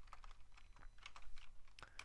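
Typing on a computer keyboard: a run of faint, irregular keystrokes.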